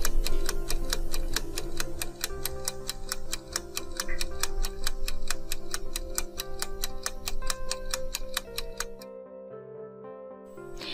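Countdown-timer music: quick, even clock-like ticking over a sustained music bed. The ticking stops about nine seconds in, leaving the softer music.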